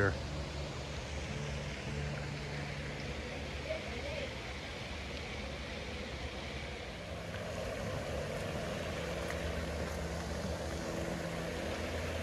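Steady outdoor background: a low hum under an even, water-like hiss, growing slightly louder about halfway through.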